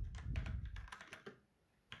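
Computer keyboard typing: a quick run of keystrokes that stops a little over a second in.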